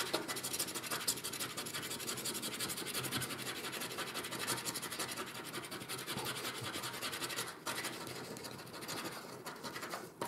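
A coin scratching the coating off a paper Million Flax scratch-off lottery card in fast, continuous strokes, with a short break about three-quarters of the way through.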